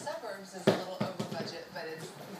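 A ball bouncing on a hard floor. The first bounce is the loudest, and the following ones come quicker and quieter as it settles.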